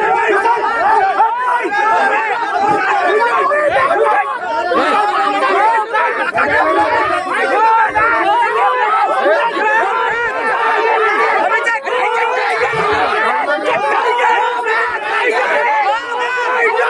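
A crowd of people talking and shouting over one another at once, many voices overlapping without a break.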